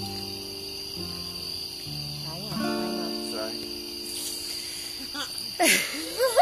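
Guitar playing a few slow, held chords that change about once a second, over the steady high chirring of crickets. A brief vocal burst near the end.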